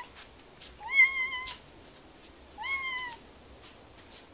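Domestic cat meowing twice, two short high-pitched meows about two seconds apart, each rising at the start; the second trails downward at the end.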